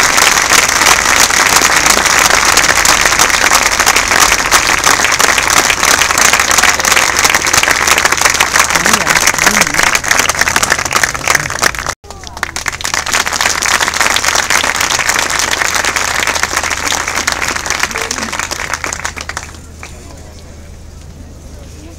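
Large crowd applauding steadily, a dense sustained clatter of clapping. It breaks off sharply about twelve seconds in, then resumes slightly softer and dies away just before the end.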